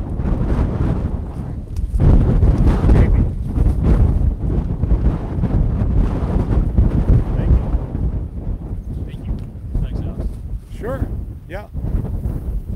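Wind buffeting the microphone: a loud, rough rumble concentrated in the low end that grows stronger about two seconds in. A brief voice cuts through near the end.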